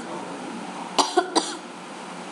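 A person's short throat sounds: three quick bursts close together about a second in, over a steady low hiss.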